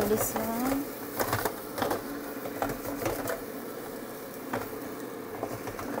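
Ninja air fryer basket being handled: a scatter of light plastic clicks and knocks, with a louder clunk near the end as the basket is slid back into the fryer.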